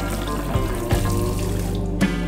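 Tap water running onto a cloth being rinsed in a sink, under background music; the water sound stops shortly before the end.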